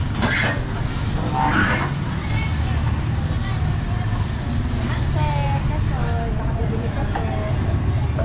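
Street ambience: a steady low rumble of a motor vehicle engine running close by, with people talking in the street, most clearly from about five seconds in.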